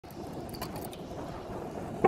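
Steady rumbling road and wind noise from a road bike rolling on asphalt, with a couple of faint clicks in the first second.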